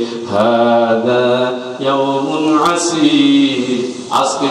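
A man's voice chanting a sermon in a melodic, sung tone through a microphone, in three long phrases of held notes.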